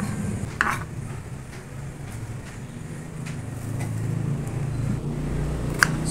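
A knife cutting green chili peppers on a bamboo cutting board, with a couple of sharp taps on the board, over a steady low hum in the background.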